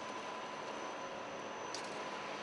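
A steady, even hiss of background noise with no distinct events.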